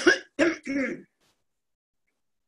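An elderly woman clearing her throat with short coughs, three quick bursts within the first second.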